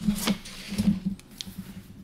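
Handling noise from a hand moving over the sketchbook paper: a few soft rubs and brushes with a couple of light clicks.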